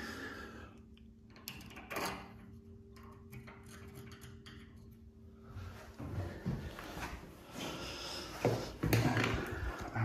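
A screwdriver clicks and scrapes inside a chrome bath tap body as the old rubber washer is hooked out: light scattered ticks over a faint steady hum. Louder knocks and handling noise follow from about six seconds in.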